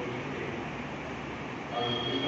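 A pause in a man's talk over a microphone: a steady rumbling hum of background noise, with his voice coming back near the end.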